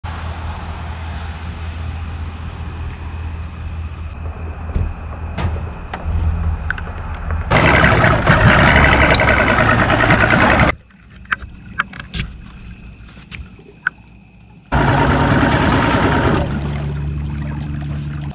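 A boat motor runs with a steady low hum while the boat moves across the water. Twice the sound jumps to a loud rushing noise, once about halfway through and again near the end. Each time it starts and stops abruptly, with a quieter stretch of a few clicks in between.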